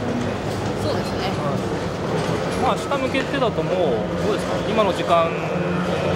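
Conversational speech over a steady low background hum.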